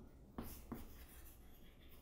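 Chalk writing on a chalkboard: faint scratching strokes, with two sharper taps of the chalk in the first second.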